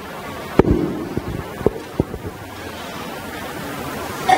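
Four or five sharp knocks or clicks in the first two seconds, the first, about half a second in, the loudest, over steady room noise.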